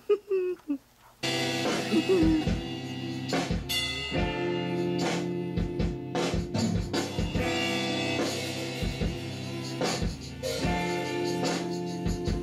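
A brief pitched voice sound, then a band track with drum kit and guitar starts suddenly about a second in and plays on with a steady beat.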